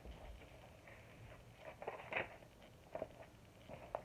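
Pages of a paperback picture book being handled and turned: faint paper rustles and light taps, loudest about two seconds in.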